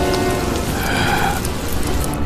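Crackle and hiss of magical flames and sparks, a dense steady noise, under background music with a few held notes.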